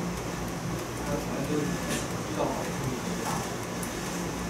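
Indistinct speech, faint and broken, over a steady low background hum.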